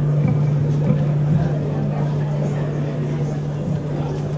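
Steady low hum holding one pitch, with an indistinct murmur of voices from a seated crowd.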